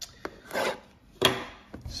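A folding knife cutting into the plastic wrap on a cardboard box of trading cards: a few short scraping cuts and taps, the sharpest about a second in.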